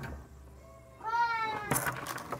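A cat meowing once: a single drawn-out, slightly falling call about a second in.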